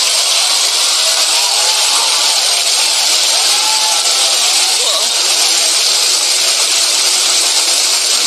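Large audience applauding steadily, with some cheering voices in the crowd.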